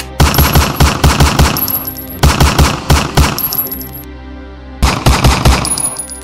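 Handgun gunfire in three rapid bursts, several shots a second, with short pauses between them and background music underneath.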